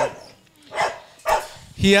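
Young Rottweilers in a kennel barking, two short barks about half a second apart in the middle.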